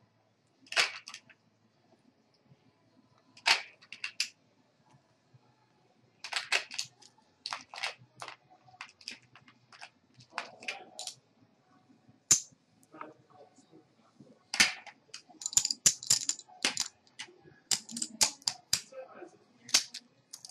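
Poker chips clacking together as they are stacked and dropped into a plastic chip rack. The sharp, irregular clicks come singly and in short runs, sparse at first and busier in the second half.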